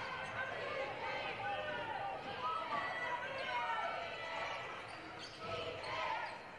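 A basketball being dribbled on a hardwood court, under a background of indistinct voices from players and spectators in the gym.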